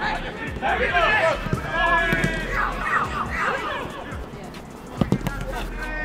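Players shouting across a football pitch. About five seconds in comes a single sharp thud of the ball being struck for a shot at goal.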